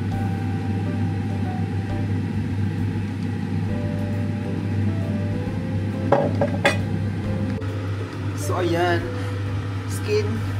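A glass oil bottle knocks twice on the worktop about six seconds in as it is set down, over a steady low hum and quiet background music. A brief murmur of voice comes near the end.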